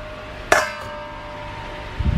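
A stainless steel mixing bowl set down into a stack of nested stainless bowls: one sharp metallic clang about half a second in, then the bowls ring on with a steady tone.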